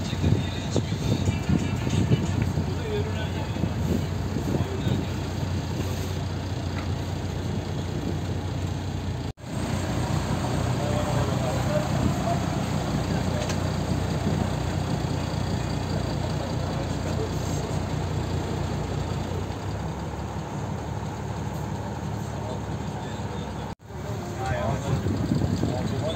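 Boat engine running at a steady low drone, with passengers' voices over it. The sound breaks off abruptly twice.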